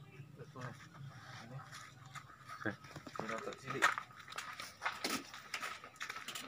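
Faint, indistinct voices of people talking in the background, with a few short clicks or knocks.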